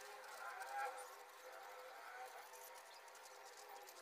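Faint scratching of a felt-tip marker writing on paper, over quiet room tone.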